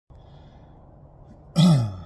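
A man clearing his throat once, short and loud, about one and a half seconds in, over faint steady background noise.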